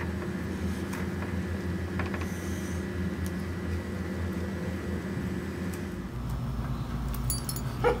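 A dog whining, over a steady low hum that shifts about six seconds in.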